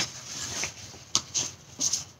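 Quiet handling noise: a few light clicks and soft rustles, roughly half a second to a second apart, as a phone is handled close to the microphone.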